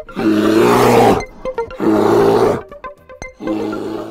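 Three loud animal roars, each about a second long and the first the loudest, laid as a sound effect over outro music whose short plucked notes carry on between them.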